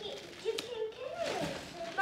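Thin plastic shopping bag rustling as a child rummages through it, with a sharp click about half a second in, under a quiet voice.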